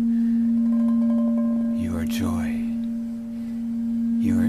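A white crystal singing bowl sung by rubbing a wooden wand around its rim, holding one steady low tone with fainter overtones above it. A voice sounds briefly about halfway through.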